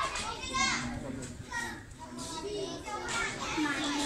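Children's voices: many kids talking and calling out at once, with high-pitched overlapping chatter.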